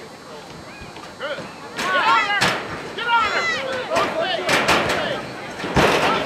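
High-pitched shouts and calls from players and spectators on a soccer field, starting about a second and a half in. Several sharp thuds of the ball being kicked are mixed in, the loudest just before the end.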